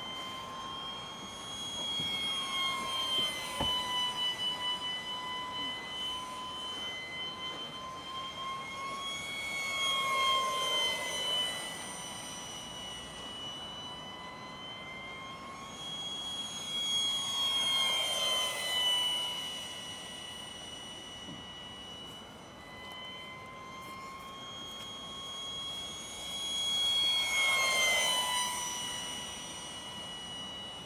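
Radio-controlled model aircraft flying overhead: a high-pitched whine with several tones stacked above it. It swells in loudness and drops in pitch each time the plane passes close, about three times.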